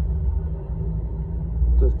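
Low, steady rumble of the Axopar Brabus Shadow 900's outboard engines turning over at low revs while the boat is manoeuvred on the joystick, growing a little louder near the end.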